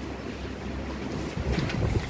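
Marker pen writing on a whiteboard, a few short strokes near the end, over a steady background hiss and low hum.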